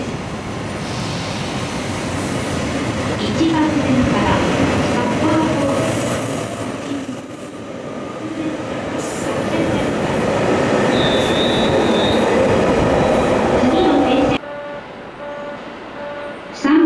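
JR 733 series electric multiple unit running past close by along a station platform: a steady rumble of motors and wheels on rail that builds over the first few seconds, with a brief high squeal a little after ten seconds. The sound cuts off suddenly about fourteen seconds in.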